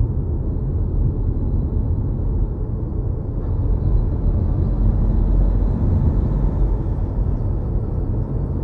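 Steady low road and tyre rumble inside an electric car cruising on a highway, heard from the cabin. A faint high hiss swells slightly in the middle.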